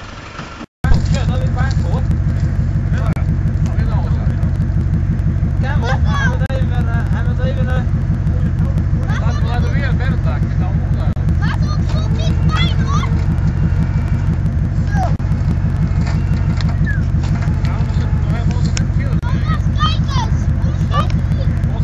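A motor vehicle's engine running steadily and loudly, with a fast, even low pulsing, after a brief break about a second in. People's voices call out over it now and then.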